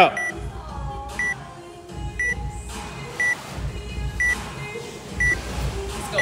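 Short high electronic beeps, about one a second, over low background music.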